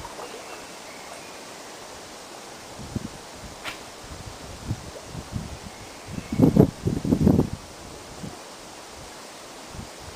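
Wind blowing through trees and over a choppy lake, a steady rushing, with gusts buffeting the microphone in a cluster about six to seven and a half seconds in.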